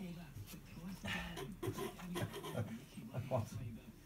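Low, indistinct talking, with faint sounds from young puppies.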